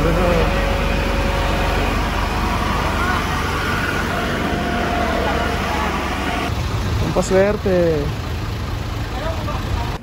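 Fire truck engines running with a steady low drone and a hiss, mixed with the voices of a crowd; a man calls out about seven seconds in.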